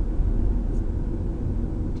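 Steady low rumble of a moving car's engine and road noise heard from inside the cabin.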